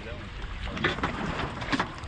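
Steady low wind-and-water rumble around a boat drifting at sea, with two short sharp sounds, one about a second in and one near the end.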